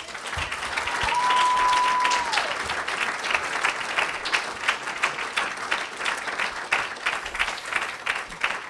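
Audience applauding, a dense patter of many hands clapping. About a second in comes one held whistle lasting about a second and a half, dropping in pitch at its end.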